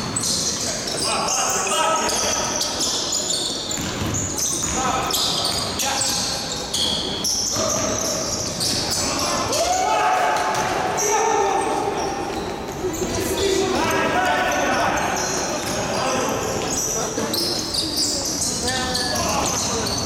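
Basketball game play in a large gymnasium: a ball being dribbled on the wooden court, amid players' calls and shouts echoing through the hall.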